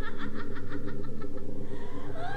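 Evil disembodied laughter in a quick run of staccato "ha" pulses, about six a second, breaking off a little past the middle, over a steady low hum.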